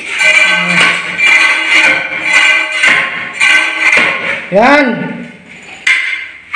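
Long-handled steel floor scraper being jabbed along concrete to chip off old floor tiles and mortar: repeated scraping strikes, about two to three a second, with a ringing, grating scrape of metal on tile.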